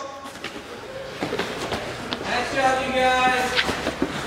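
A voice calls out in one long held shout in the second half, over a few scattered thumps of hands and feet landing on rubber gym mats during burpees.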